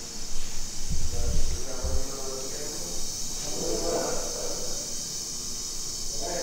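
Indistinct voices talking over a steady high hiss, with a few low thumps between about one and two seconds in.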